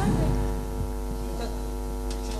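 Steady electrical mains hum from a PA sound system, with the tail of a voice fading out in the first half second.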